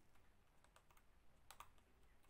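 Near silence with a few faint computer keyboard clicks, the clearest a quick pair about one and a half seconds in.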